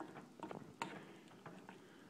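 Faint, scattered ticks and small pops from a pan of oatmeal cooking on the stove while it is being stirred, the clearest tick a little under a second in.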